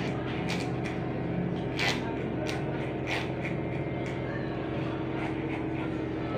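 Corded electric hair clipper with a number 3 guard buzzing steadily as it cuts up the side of the head. Several short, crisp rustles come through as it passes through the hair.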